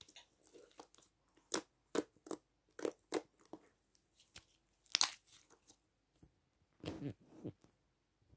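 Sticky purple glitter slime being squished and pulled by hand, giving irregular wet clicks and pops, the loudest about five seconds in.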